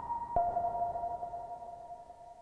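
Moog analog synthesizers (Subharmonicon and DFAM) sounding pinged, bell-like notes. A second, lower note is struck about a third of a second in and rings on with the higher one, both slowly fading as the piece closes.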